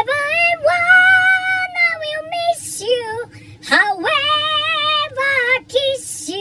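A cappella singing by one high-pitched voice: a long held note from about half a second to two and a half seconds in, then shorter phrases that slide in pitch.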